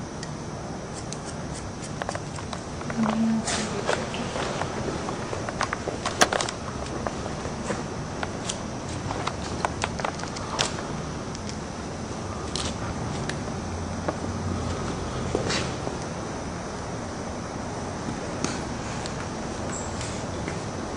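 Hair-cutting scissors snipping through hair now and then, a scattering of short sharp clicks spread out several seconds apart over steady room noise.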